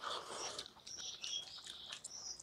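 Close-up mouth sounds of eating rice and egg curry by hand, loudest as a burst of chewing in the first half second, then quieter chewing. Short, high bird chirps repeat in the background.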